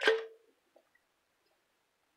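Raw basa fish fillets tipped from a bowl into simmering tomato curry, making one short wet plop right at the start.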